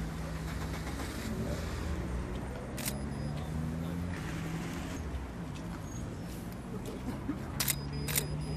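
Steady low hum of idling vehicle engines and road traffic, with two sharp clicks, one about three seconds in and one near the end.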